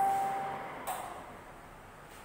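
A single bell-like ding, struck just before, ringing out and fading over about a second, followed by a faint click.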